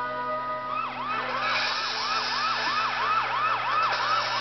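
Police siren from a cartoon soundtrack, heard through a TV speaker: a fast up-and-down wail of about three cycles a second that starts about a second in.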